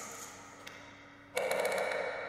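Sound-art installation playing over loudspeakers: an electroacoustic composition built from the sounds of everyday objects. A sound fades out, leaving a faint low hum, then about a second and a half in a sudden hissing sound with a ringing tone in it starts and slowly dies away.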